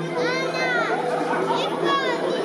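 Live grand piano playing under a solo singer's song, with a high-pitched child's voice rising and falling over it twice, about half a second in and again near the end.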